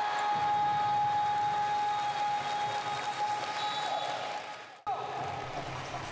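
Arena crowd applauding and cheering after a game-deciding basket, with a long steady tone held over the clapping for about four seconds. The sound cuts off abruptly near the five-second mark, and the crowd noise picks up again straight after.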